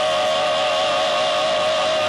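Gospel vocal trio holding one long sung note with vibrato, backed by a live band.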